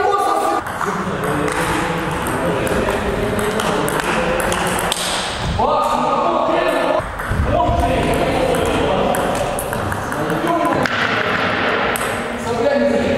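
Table tennis ball clicking back and forth off the paddles and table during a rally, with voices sounding in the hall.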